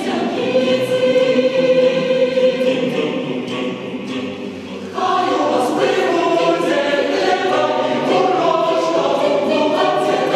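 Mixed choir of women's and men's voices singing unaccompanied. The sound thins out and falls off a little before the middle, then the full choir comes back in suddenly and louder about halfway through.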